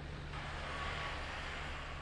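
Road vehicles on a snowy road: a steady low engine hum under a broad rushing noise that comes up shortly after the start.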